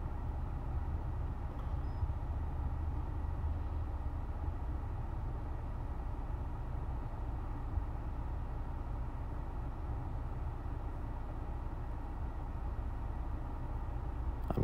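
Steady low rumble of background noise, even throughout, with no distinct events.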